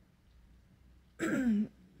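A woman's single short scoffing laugh, one brief harsh huff that falls in pitch, about a second after a stretch of near silence.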